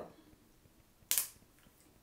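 One short, sharp noise about a second in, as the clip-in bangs hairpiece is picked up and handled; otherwise quiet room tone.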